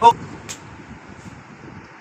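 Low background room noise with a faint rumble, after the tail of a spoken word at the very start, and one short sharp click about half a second in.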